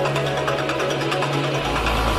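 Electronic dance music from a DJ mix: a steady tick of hi-hats over a held low synth note, with a deep bass line coming in near the end.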